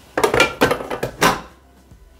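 Stainless steel Bimby (Thermomix) mixing bowl clattering and scraping as it is set down into the machine's base, a few short metallic knocks over about a second.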